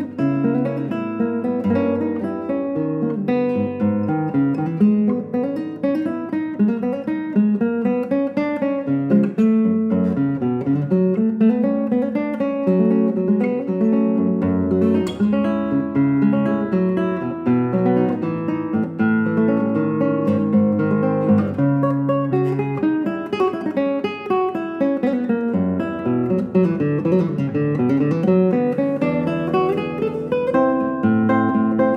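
Solo classical guitar playing continuously: plucked melody notes over sustained bass notes.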